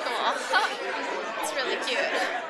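Chatter of people talking, with voices overlapping.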